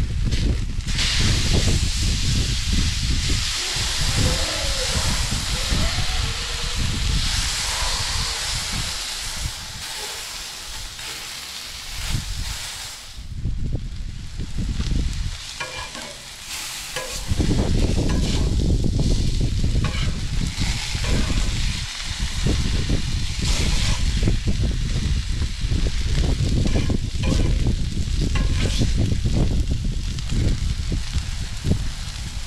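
Pork chops and zucchini slices sizzling on a Blackstone griddle's flat steel top, with a metal spatula scraping and flipping them. A low rumble joins the sizzle for the second half.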